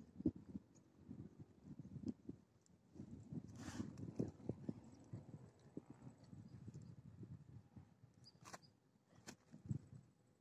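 Faint, irregular low knocks and bumps from a fishing rod and tackle being handled, with a brief hiss about four seconds in and a couple of sharp clicks near the end.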